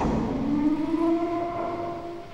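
Film sound effect of a mecha's cockpit hatch closing: a knock, then a steady mechanical whine of a few tones that rise slightly and hold, fading near the end.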